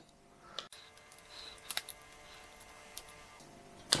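A few faint clicks and taps from handling an action camera while a rubber band is worked around its lens cover, over faint background music.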